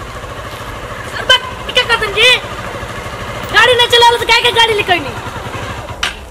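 Small motorcycle engine running at low speed, a steady low hum under everything, while a high-pitched voice calls out twice, about a second in and again past the middle.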